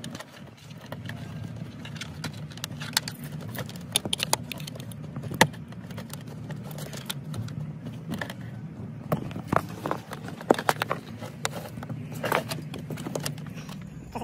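Wiring harness being pushed and worked by hand behind a plastic dashboard, giving irregular small clicks, ticks and rustles of wire and plastic, over a steady low hum.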